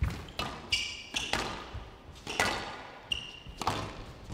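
Squash rally: the ball smacked by rackets and off the court walls, a run of sharp hits irregularly spaced and ringing in the hall, with court shoes squeaking on the floor twice.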